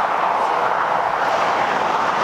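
Steady rushing hiss of traffic on a highway, without clear pitch or rhythm.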